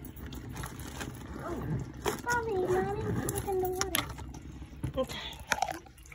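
A small child's wordless, drawn-out vocalizing for about two seconds, with a few sharp knocks of the phone being handled.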